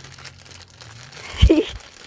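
Thin plastic treat-bag packaging crinkling as it is handled and pushed back into its packet. About a second and a half in comes a brief thump with a short vocal sound.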